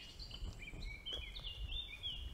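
Faint songbird singing: a string of short, high notes that step up and down in pitch, over a low background rumble.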